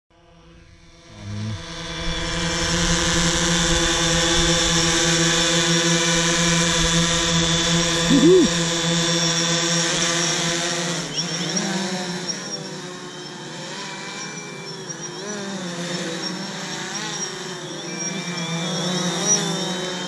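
DJI Phantom 3 Standard quadcopter's propellers buzzing in a steady, many-toned hum as it hovers close. From about halfway on, the pitch wavers and the sound gets quieter as the drone flies off.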